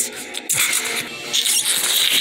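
Toy ray gun firing its electronic blaster sound effect, a run of noisy zaps.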